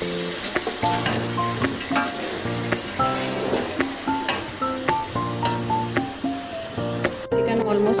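Chicken pieces frying in hot oil in a metal pot, sizzling, while a spoon stirs them with short knocks and scrapes against the pot. Melodic background music plays over it, and a voice starts near the end.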